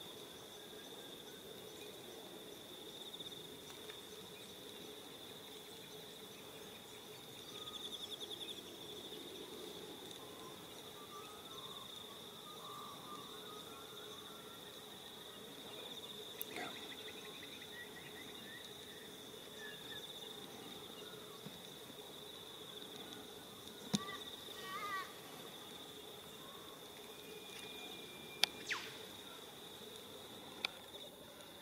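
Insects chirping steadily at one high pitch throughout, with a few faint short calls in the middle and a couple of sharp clicks near the end.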